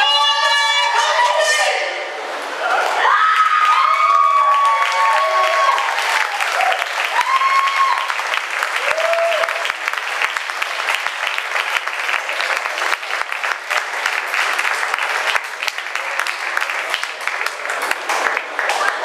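Audience applauding with whoops and cheers, the whoops dying away after about ten seconds while the clapping carries on. It is preceded by a voice on stage holding a note that ends about two seconds in.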